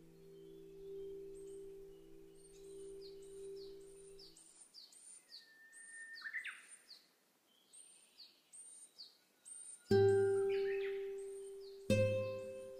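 A quiet held chord fades out a few seconds in, leaving birds chirping: a run of short high calls about two a second, with one lower call near the middle. Near the end, plucked guitar notes start a new slow phrase.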